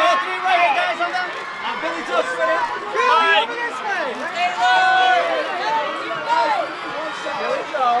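Many overlapping voices of press photographers calling out at once, a steady jumble of shouted speech.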